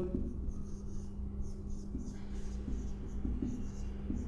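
Felt-tip marker writing on a whiteboard: soft, irregular scratching strokes as a word is written out, over a faint steady hum.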